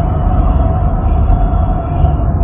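A woman's operatic voice holding one long steady note, half-buried in a loud low rumble, recorded on a phone.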